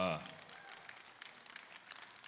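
A man says a short "uh" into a handheld microphone, then pauses. Only faint, scattered noise from the audience in the hall can be heard under it.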